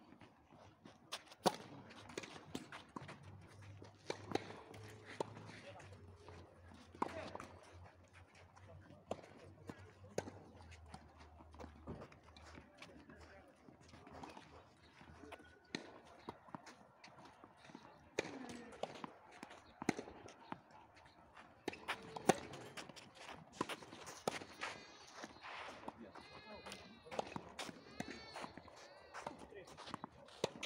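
Tennis ball struck by rackets during a doubles rally on a clay court: sharp hits a few seconds apart, with the players' footsteps and voices between them.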